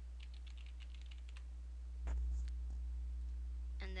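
Computer keyboard typing: a quick run of about ten keystrokes in the first second and a half, then a dull thump about two seconds in and a few more clicks. A steady low electrical hum runs underneath.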